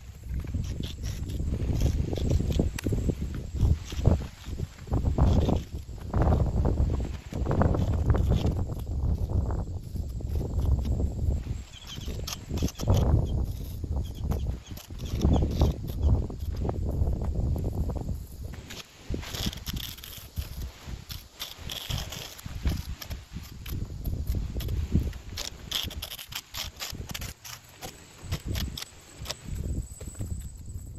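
Irregular scratching and scraping of a wire-loop clay carving tool cutting grout lines into a soft cement rock-pattern facing, in short strokes, over a low uneven rumble.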